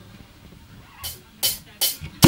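Three short, sharp drum-kit hits in the second half, roughly 0.4 s apart: a drummer's lead-in before a live band starts a song.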